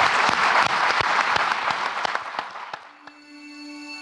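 Audience applauding, the clapping fading out about three seconds in. Soft outro music with long held notes then begins.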